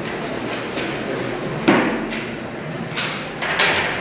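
Loose sheets of paper being handled and shuffled on a table: a sharp knock about 1.7 seconds in, then two more crisp rustles near the end.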